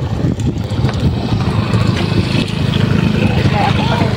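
Wind buffeting the phone's microphone: a loud, steady low rumble, with a voice coming in near the end.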